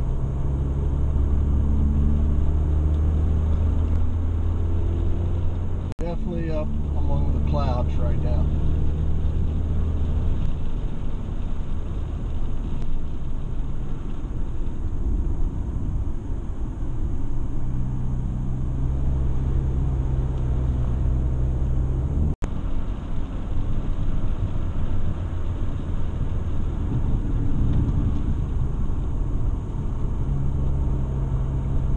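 Car engine and road noise heard inside the cabin: a steady low hum whose pitch shifts a few times as the engine works up a mountain grade. A brief voice-like sound comes about six to eight seconds in.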